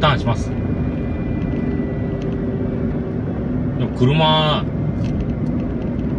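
Steady engine and tyre rumble of a car driving, heard from inside the cabin. A short burst of a person's voice comes about four seconds in.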